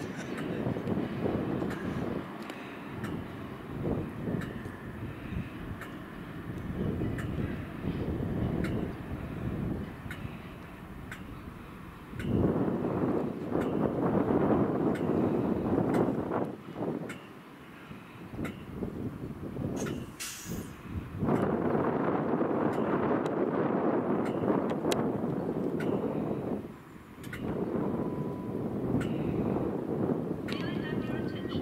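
Class 60 diesel locomotive hauling a loaded stone train towards the listener, its engine and the rolling wagons making a steady rumble. The rumble swells louder twice, a little under halfway and again about two-thirds of the way through, with a short hiss just before the second swell.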